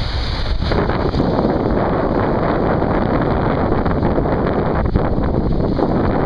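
Wind buffeting the microphone in a steady loud rumble, getting stronger about a second in, with small waves washing onto the sand beneath it.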